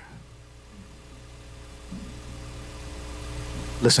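A soft sustained instrumental chord, several held notes together, swelling in slowly over a low electrical hum as quiet backing music starts under the sermon.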